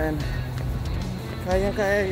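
A man's voice singing a drawn-out, wavering phrase near the end, over a steady low rumble.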